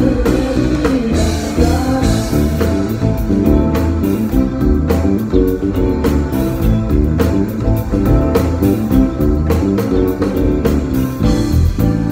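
A live band playing: an electric bass line sits strong in the low end, over drums, percussion, guitar and keyboards.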